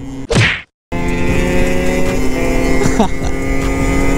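A short swish and a brief dropout less than a second in, then a stock 50cc two-stroke motorbike engine running at a steady cruising speed, with wind and road noise.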